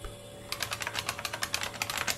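Rapid keyboard-like clicking, many keys tapped in quick succession, starting about half a second in. It is a sound effect of keys being punched to set the time machine's destination year.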